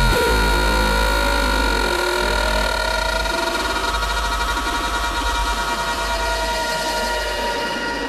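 Hardcore gabber electronic track: several held synth tones over a deep, steady bass drone, with no drum beat.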